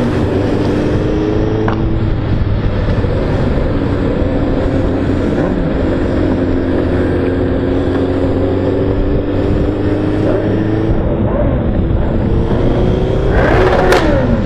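Motorcycle engine heard from the rider's own bike while riding, its note dipping early and then climbing slowly as the bike gathers speed, over a steady rush of wind and road noise.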